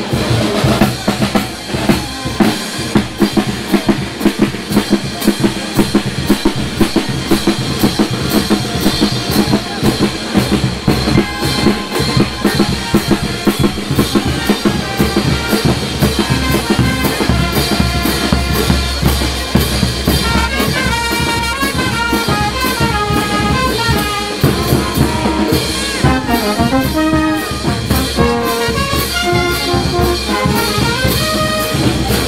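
Brass band playing: snare drum, bass drum and clash cymbals keep a fast, steady beat throughout. Trumpets, trombones and baritone horns come in with a melody partway through and carry it to the end.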